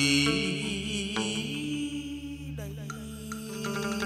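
Chầu văn ritual music: plucked lute notes over a steady low tone, with a held, wavering note fading out in the first second.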